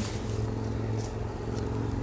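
A steady low hum, like a motor or engine running, that does not change in pitch or level.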